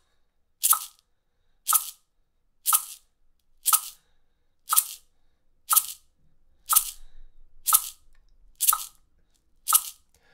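A single maraca shaken in steady quarter notes at 60 beats per minute, one crisp shake of its beads each second, in time with a metronome's click.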